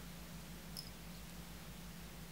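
Quiet room tone with a steady low electrical hum, and one brief faint high squeak or tick a little under a second in.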